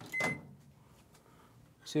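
Hamilton Beach microwave oven giving a short high beep as its door latch is released with a click and the door swings open.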